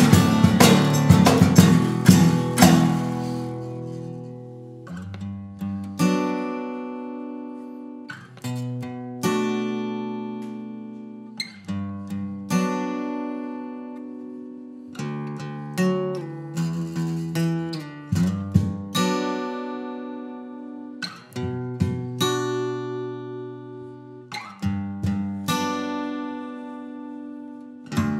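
Two acoustic guitars playing an instrumental break: busy strumming for the first few seconds, then single chords struck every second or two and left to ring out and fade.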